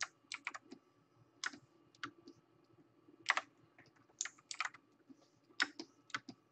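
Computer keyboard keys pressed in irregular single clicks and short runs, fairly quiet, over a faint steady hum.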